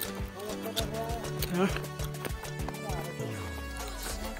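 Background music with a steady beat and held low notes, one of which slides down near the end.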